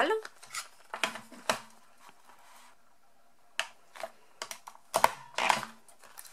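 Card stock and a plastic craft paper punch handled on a table: light taps and clicks as the card pouch is slid into the punch. Near the end, sharper, louder clicks as the three-way punch is pressed down, cutting an oval notch through the card.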